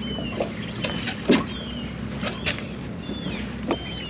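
Seabirds giving short, high, falling cries about six times over a steady low hum from the boat, with a few sharp knocks, the loudest about a second in.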